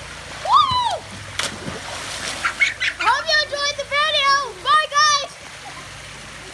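A child gives a short high yell, then a splash as he drops off the end of a water slide into the pool about a second and a half in, followed by more splashing water. A child then shouts in a high, wavering voice for about two seconds.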